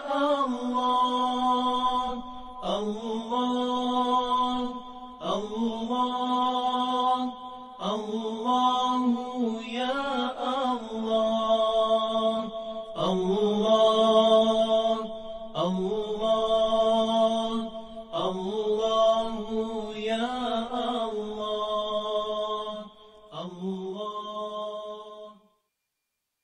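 A single voice chanting in long, held phrases that slide between notes, a new phrase beginning about every two and a half seconds. It cuts off abruptly shortly before the end.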